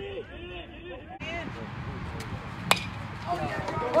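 A single sharp crack of a bat hitting a baseball about two and a half seconds in, with spectators' voices before and after it, rising toward the end.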